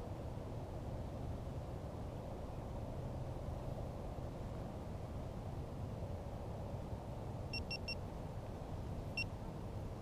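Three quick electronic beeps, then a single beep just over a second later, from a chest-mounted GoPro-style action camera as its button is pressed. A steady low rumble runs underneath.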